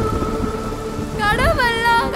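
Trailer soundtrack: a low, crackling thunder-like rumble under a held music drone, then a voice comes in a little over a second in with long, wavering sung notes.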